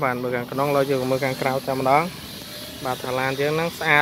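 A man speaking, with a short pause in the middle.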